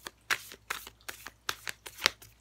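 A tarot deck being shuffled by hand: a run of short, irregular card slaps and riffles.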